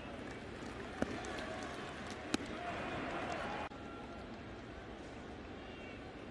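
Ballpark crowd ambience with scattered distant voices from a sparse crowd, and two sharp pops about one and two and a half seconds in. The ambience drops suddenly to a quieter level a little past halfway.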